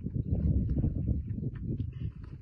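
Lionesses growling low as they feed together on a warthog kill, a dense rumbling that eases off just before the end.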